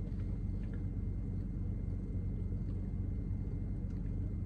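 Steady low hum of a car idling, heard from inside the cabin.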